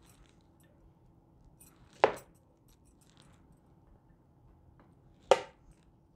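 A metal spoon clinks twice against an enamel mixing bowl, once about two seconds in and again near the end, each a sharp clink with a short ring. Between the clinks there is only faint handling of the filling and leaf.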